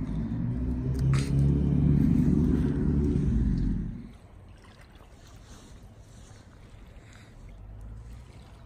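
Car engine and road noise heard from inside a moving car, a steady low rumble with a brief click about a second in; it stops abruptly about halfway through, leaving only a faint, even outdoor background.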